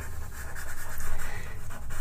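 Faber-Castell Pitt pastel pencil scratching on paper in short, grainy strokes as grey is worked in around drawn leaves.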